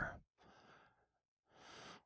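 A man's faint breathing between sentences: an exhale about half a second in, then near silence, then an inhale just before he speaks again.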